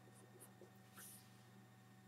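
Near silence with a few faint scratches of a felt-tip marker writing on paper, one a little stronger about a second in, over a low steady hum.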